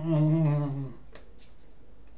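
A man's voice humming a steady, low "mmm" that breaks off just under a second in. A few faint clicks follow.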